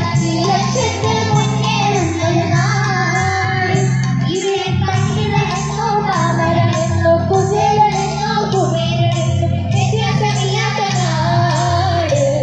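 A girls' choir singing together into microphones over amplified backing music with a steady beat.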